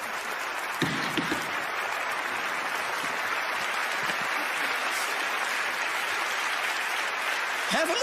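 Studio audience applauding steadily, with a brief voice from the crowd about a second in.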